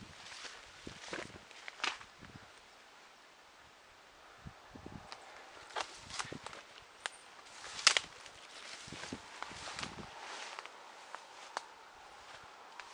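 Footsteps outdoors: irregular crunches and knocks of someone walking over uneven ground, with one sharper, louder click about eight seconds in.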